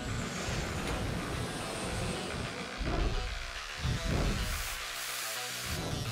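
Intro music with a noisy rumble underneath and two whooshing sweeps, about three and four seconds in, then a brief drop just before a new hit near the end.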